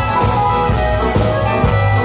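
Live band playing an instrumental passage with no singing: sustained melody lines over bass and a steady drum beat.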